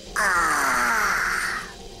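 A long, drawn-out voice-like sound sliding steadily down in pitch for about a second and a half, then fading, the opening of a science-segment sound-clip jingle.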